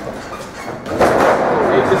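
Wrestlers' bodies slamming onto the ring mat about a second in: a sudden loud impact that carries on as a noisy rumble, with a commentator's shout over it.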